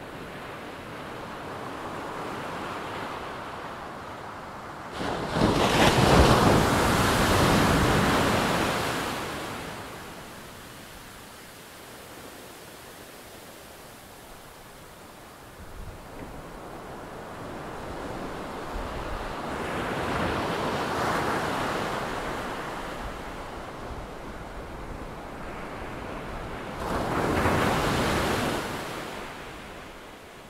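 Ocean surf: waves breaking and washing in, in slow swells of rushing noise. The loudest breaks about five seconds in, with weaker ones around twenty seconds and near the end.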